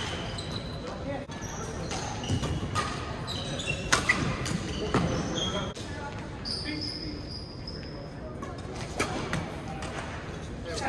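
Badminton in a gym: sneakers squeak in short high chirps on the court floor, and a racquet hits a shuttlecock with a sharp crack about four seconds in, again a second later, and once more near the end.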